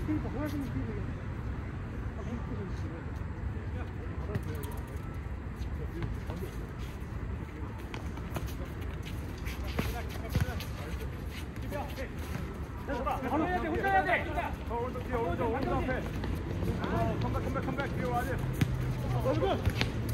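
Futsal players' voices calling out over a steady low background rumble, the voices getting louder past the middle, with a few sharp knocks.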